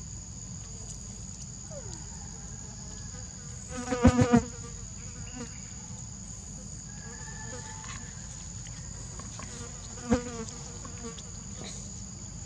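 Steady high-pitched insect drone of two held tones. About four seconds in, a loud cluster of four quick pitched cries, and one shorter cry near ten seconds.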